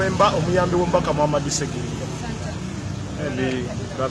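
A man speaking for about the first second and a half and again briefly near the end, over a steady low engine hum of road traffic.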